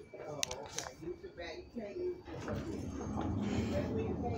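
Indistinct voices talking, with two sharp clicks shortly after the start. About halfway in, an even rushing noise takes over.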